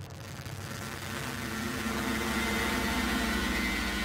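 Title-sequence sound effect: a steady electronic hum with a hiss of static over it, swelling over the first couple of seconds and then holding.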